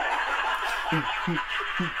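Laughter: a man laughing in short bursts, each dropping in pitch, about three in the second half, over a wash of group laughter.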